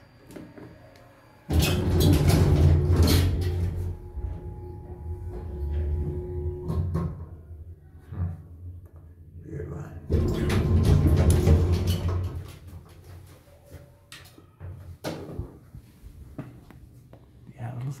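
A 1992 ATLAS Omega II traction elevator riding down one floor. About a second and a half in there is a sudden loud start, followed by a steady motor hum and whine from its DC drive. A second loud stretch about ten seconds in comes as the car stops and the doors open.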